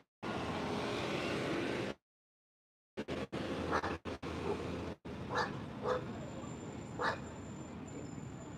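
Steady outdoor street background noise. The audio cuts out completely several times in the first half, once for about a second, typical of a live stream's sound dropping. In the second half come a few short, sharp sounds of unclear source.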